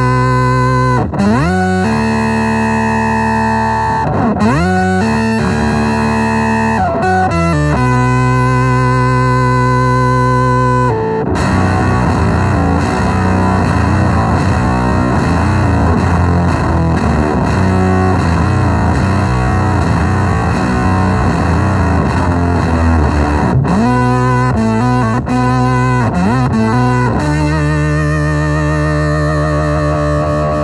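Electric guitar played through a Vox Tone Garage Trike Fuzz pedal and heard from the speaker cabinet: heavily fuzzed held notes and chords with sliding pitch bends at first. About eleven seconds in it turns to a denser, busier passage, and near the end it returns to held notes with slides.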